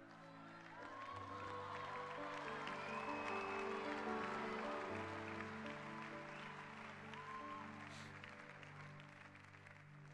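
Keyboard playing sustained pad chords, with the congregation clapping and calling out over it; the crowd noise swells about a second in and fades toward the end.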